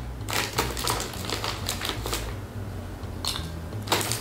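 A crinkly snack bag crackling and rustling in quick, irregular bursts as a hand digs inside it for a piece.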